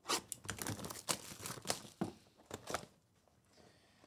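Rustling and crinkling of card packaging as hands work an encased card out of a small cardboard box. The sound comes in irregular bursts for about three seconds, then stops.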